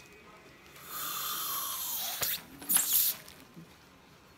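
Dental air-water syringe blowing air only, not water: one hiss of about a second with a falling tone, then a shorter, sharper hiss near the end.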